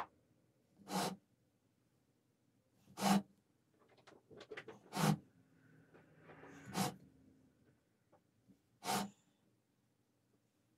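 Stacked wooden segment rings being handled and turned into line: five short knocks of wood on wood, about two seconds apart, with light clicks and soft scraping of the rings sliding over each other between them.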